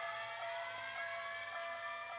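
A siren sounding at moderate level, several tones gliding slowly upward together over a steady lower tone.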